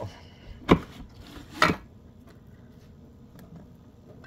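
Two sharp knocks about a second apart from a spoon striking kitchenware as solid coconut oil is scooped into a stainless steel mixing bowl, followed by faint handling sounds.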